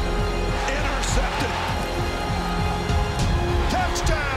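Background music with a steady beat, with indistinct voices from the game footage mixed under it.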